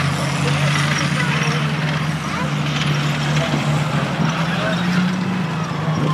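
Engines of vintage military vehicles, among them a Jeep, tanks and an armoured car, running in a slow procession: a steady, loud low drone.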